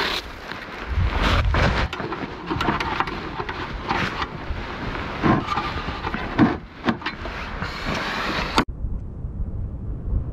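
Scraping and crunching in snow, then sharp metal clinks and knocks as a camping stove is handled on a steel plate, over wind on the microphone. Near the end it cuts suddenly to a quieter, dull steady rumble.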